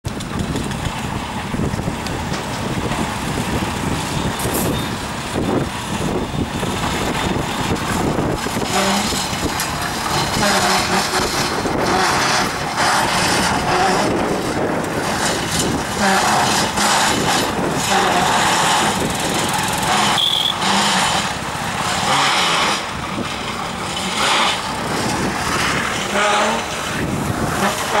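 Steady, loud noise of running motors, with brief louder swells in the middle and later part.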